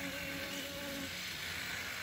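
Honey bees of an open hive buzzing in a steady hum around a frame of comb.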